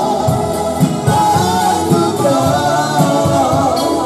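Live Romani band music: a singer over keyboard with a steady bass beat, for dancing.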